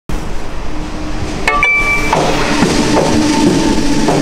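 A Rejsekort card reader accepts a check-in with a click and a short electronic beep about one and a half seconds in. A commuter train runs alongside the platform with a continuous rumble throughout.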